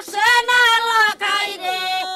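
Women singing without accompaniment in high, loud voices, holding long notes that slide down at the ends of phrases. Near the end a second voice overlaps on a different pitch.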